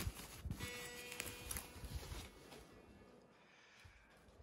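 Thin foam packing sheet rustling and crinkling as it is pulled off a guitar, with a few small knocks, dying away after about two and a half seconds. A faint ringing note is heard briefly about a second in.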